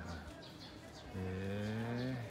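A man's long, low "hmm" of agreement, held for about a second from halfway in and rising slightly at the end.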